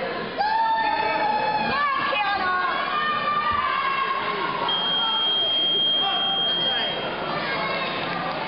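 Spectators shouting and cheering on a judo hold-down in high, long-held calls. About halfway, a single steady electronic beep lasts about two seconds: the timer signalling that the hold-down has run its full time.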